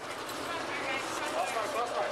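Body-camera microphone audio in a concrete parking garage: a steady hiss of noise with distant, indistinct shouting voices.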